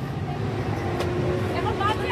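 Low, steady rumble of a river ferry's engine with a steady hum over it, and faint voices near the end.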